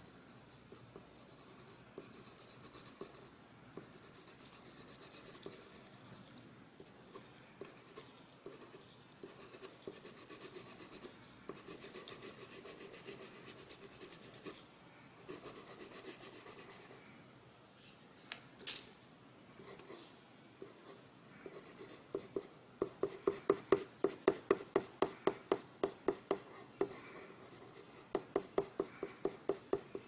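Pencil scratching on drawing paper. First there are faint, irregular sketching strokes. About two-thirds of the way through comes a fast, even run of short, louder back-and-forth strokes as an area is shaded in.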